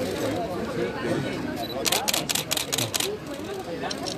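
A camera shutter firing a rapid burst of about eight clicks over about a second, starting about two seconds in, over the chatter of a crowd.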